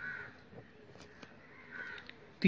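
Two faint bird calls, one at the start and one near the end, over the quiet sound of a pen writing on paper.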